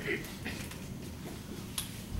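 Quiet room tone with a couple of short, sharp clicks, the sharpest near the end.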